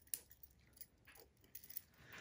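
Faint, scattered clicks and clinks of a gold metal clip and key ring being fitted onto a silicone wristlet key ring by hand.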